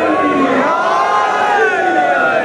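A crowd of men cheering and shouting together, many voices rising and falling in pitch at once.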